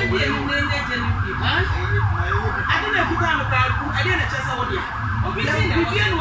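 A siren sounding a fast, repeating rise-and-fall yelp, about three sweeps a second, stopping near the end, with people talking under it.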